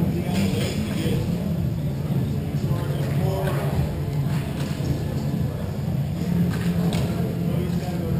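Indoor hockey rink ambience: indistinct distant voices and music over a steady low hum, with a few sharp knocks.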